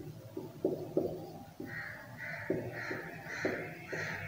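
Whiteboard marker writing on a whiteboard: short scratching strokes and taps as letters are formed. From about two seconds in, a series of short calls repeats about twice a second in the background.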